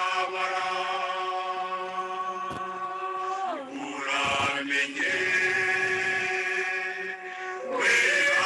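Chanted vocal music: a voice holds long, steady notes. The first note slides down in pitch about three and a half seconds in, and a second long held note follows about a second later.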